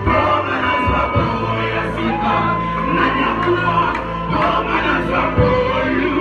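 Live gospel worship music: a band with drum kit and electric guitar playing, a man singing into a microphone, and congregation voices joining in.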